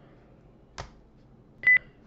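A light click a little under a second in, then a short, loud, high-pitched electronic beep near the end.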